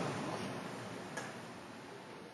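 The imam's 'Allahu akbar' echoing through the mosque's loudspeakers and dying away into a faint hiss, with one soft click a little past halfway.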